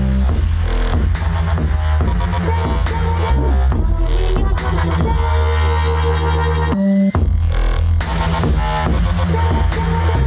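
A DJ's live mix of bass-heavy electronic dance music with a steady beat. About five seconds in, a rising sweep builds for two seconds. The bass cuts out for a moment, and then the full beat drops back in.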